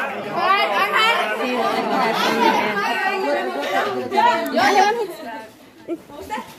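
Excited chatter: several people talking over one another at once, dying down about five seconds in.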